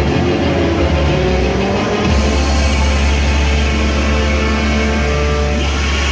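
Loud music playing; about two seconds in, a heavy, sustained bass note comes in and holds.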